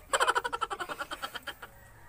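Laughing: a burst of quick, pulsing laughs that fades out after about a second and a half.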